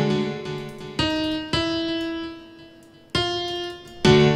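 FL Studio's FL Keys software piano: the last of a repeated chord pattern dies away, then three single notes are struck one at a time, about a second, a second and a half, and just over three seconds in, each ringing out and fading.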